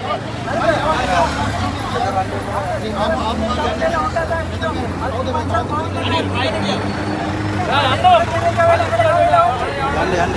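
Men's voices in a loud street exchange, with a vehicle engine running close by as a steady low hum from about a second in.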